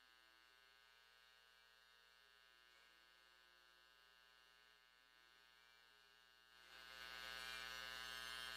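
Faint steady electrical hum and buzz on an idle live-feed audio line, close to silence. Near the end the level jumps suddenly as a louder, fuller sound comes up.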